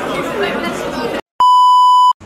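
Background chatter of voices stops dead about a second in, and after a brief silence a loud, steady, pure test-tone beep starts: the broadcast test-card bleep that goes with colour bars.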